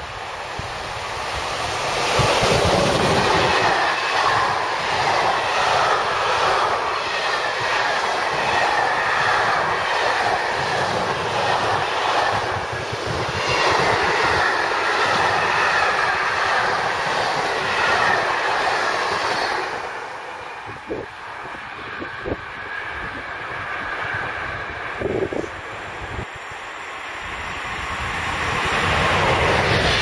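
An electric-hauled freight train of empty flat wagons passing at speed: a steady rolling rumble with the wheels clattering rhythmically over the rail joints. About twenty seconds in the sound drops away, leaving a few faint knocks, and near the end another train approaches.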